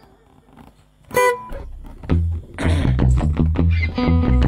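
After about a second of quiet, acoustic and electric guitars start the intro of a song. The chords are strummed in a steady rhythm over strong low bass notes.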